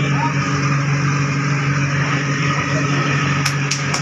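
Fast ferry's diesel engines running with a steady, loud low drone while the exhaust at the hull side belches thick black smoke. A few sharp clicks come near the end.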